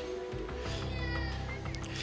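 Background music with steady sustained tones over a low hum, and a brief high-pitched wavering wail about halfway through.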